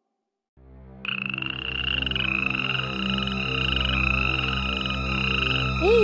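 Night ambience: silence for about half a second, then a low steady drone comes in, and from about a second in a fast-pulsing, high trilling frog chorus that runs on over the drone.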